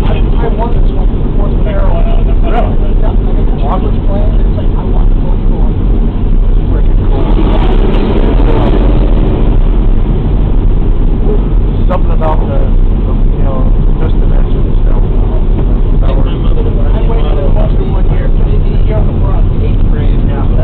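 The radial engines of a B-24 Liberator bomber running, a loud steady drone heard from inside the fuselage.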